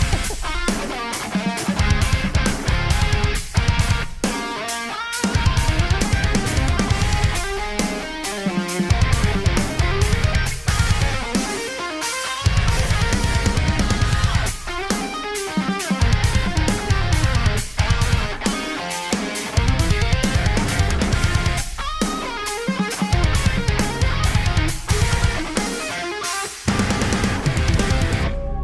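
Instrumental progressive metal recording: a melodic electric guitar solo over tight drums and bass. The low end drops out briefly about every four seconds.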